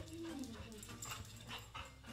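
A dog whimpering briefly: one short whine that falls in pitch near the start.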